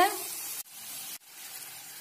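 Potato fries sizzling as they fry in oil in a pan, a steady hiss that cuts out briefly twice.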